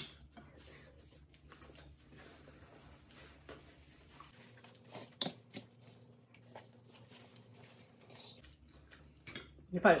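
Two people eating poutine with forks: quiet chewing and a few light, scattered clicks of forks against plates. A voice starts speaking near the end.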